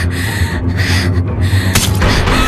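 A young woman gasping in a few ragged breaths under mental strain, over a low, steady droning score.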